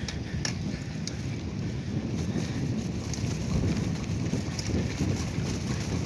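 Steady wind noise rumbling on the microphone, with a few faint ticks in the first second or so.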